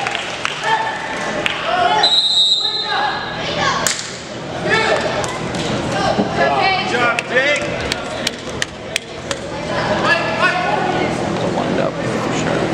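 A referee's whistle blown once for about a second, about two seconds in, over shouting voices of players and spectators in the gym. A run of sharp knocks, the ball bouncing on the hardwood court, comes later.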